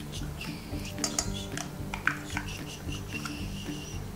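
Plastic spatula scraping soft butter off a plastic measuring cup over a stainless steel mixing bowl, with a few short clicks and clinks of utensil against cup and bowl.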